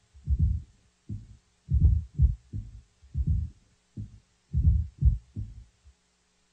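A drum loop played back with everything above about 210 Hz filtered off and its low end boosted with an EQ set at 70 cycles, exaggerated: only dull low thumps of the drums are left, about two to three hits a second in an uneven groove.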